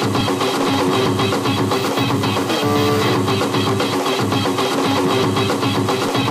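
Hard electronic dance track programmed on an Amiga 500: a fast, steady drum beat under a repeating synth riff, with no vocal sample in this stretch. The riff shifts pitch about three seconds in.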